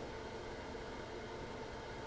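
Faint steady hiss: room tone and microphone noise with no other sound.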